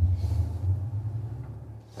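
Genesis GV70 EV's active sound design in enhanced 'S engine' mode, playing an emulated combustion-engine sound inside the cabin: a low, steady rumble that fades near the end.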